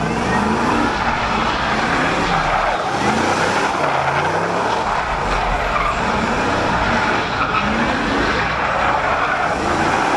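A car spinning its tires on pavement, with a steady screech while the engine revs in repeated rising sweeps.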